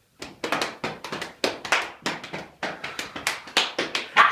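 Hand claps from one or two people, irregular and several a second, often falling in close pairs as if out of step, in a small room.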